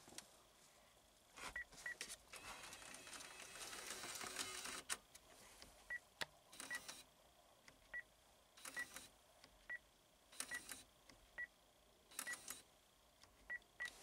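Pontiac Aztek six-disc CD changer head unit beeping faintly, short high beeps roughly once a second as its buttons are pressed during a reset of the changer, with clicks and a brief mechanical whir from the changer mechanism.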